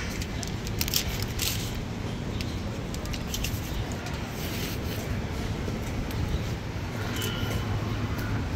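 Steady city street noise from traffic, with a few short crackles in the first couple of seconds.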